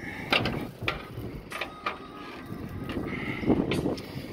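A few scattered clicks and knocks on the steel upper deck of an empty car-hauler trailer, from someone moving about on it and handling its fittings.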